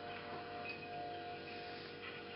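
A steady chime-like ringing tone held for about a second and a half, over a faint constant hum.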